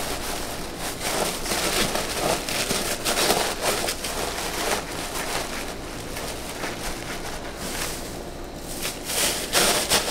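Crinkle-cut paper shred rustling and crackling as hands press and tuck it around bath bombs in a shipping box, with continuous irregular handling.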